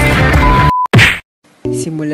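Rock-style music cuts off after a short steady beep. About a second in comes a loud, brief whoosh-and-whack transition sound effect, then a moment of silence, and guitar music starts up.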